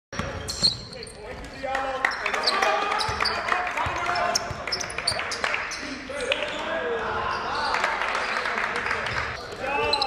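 A basketball bouncing on a gym floor during play, with several voices of players and onlookers in a large gymnasium.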